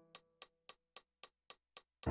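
Faint metronome clicking steadily at about four clicks a second, close to the 223 beats per minute on the digital piano's display, as the last piano chord dies away at the start.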